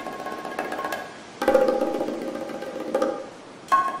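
Surf-rock band playing without vocals: bongos tapping over held chords. A new chord comes in about a second and a half in, and another just before the end.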